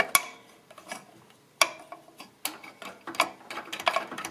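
About half a dozen sharp metallic clicks and taps, unevenly spaced, as fingers handle a small homemade steel choke bracket and lever bolted to a scooter engine's shroud.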